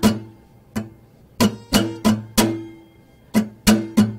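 Acoustic guitar strummed in an uneven rhythm, the strumming hand moving in toward the strings and back out, so that some strokes hit hard and others only lightly. There are about nine strokes with short pauses between them, and the chord rings on through each pause.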